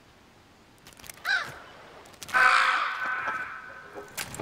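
A crow cawing twice: a short call about a second in, then a longer, louder call just after two seconds that fades out.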